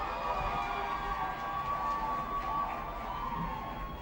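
Women in the audience ululating (zaghareet): several long, held, trilling calls sounding together over applause, easing a little near the end.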